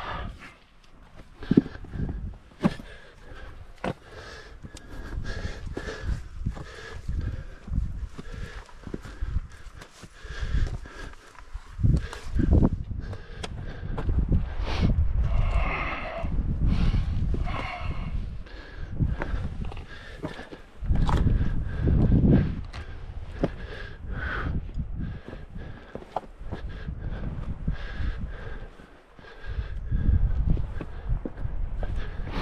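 Hiking boots stepping and scuffing on bare rock during a scramble, with irregular knocks and scrapes and uneven low bumps from the camera being carried.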